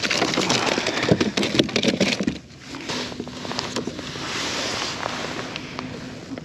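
Close handling noise: crackling and rustling as a freshly caught tautog is held and lifted in gloved hands, with jacket sleeves brushing. The crackling is dense for about the first two seconds and then eases into a softer hiss.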